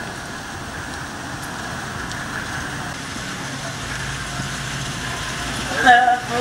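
Steady outdoor hiss with a low engine hum under it, as from a car idling. A man's voice comes in right at the end.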